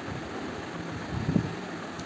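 A pause in speech with a steady background hiss, and one brief faint low sound about a second and a half in.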